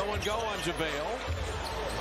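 Basketball game broadcast playing at a low level: a play-by-play commentator talking over arena sound, with a basketball being dribbled on the hardwood court.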